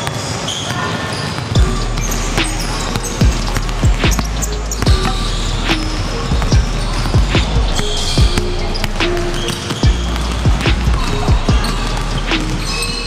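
Basketballs bouncing on a hardwood gym floor in irregular dribbles, under background music with a steady bass line that comes in about a second and a half in.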